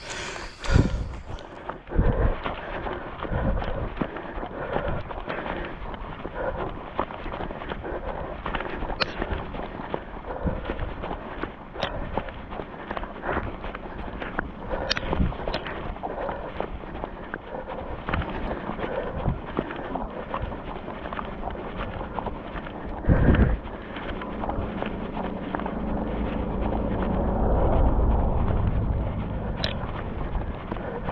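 Footsteps on a paved road, with wind rumbling on the microphone. There are a few louder knocks, and the rumble swells near the end.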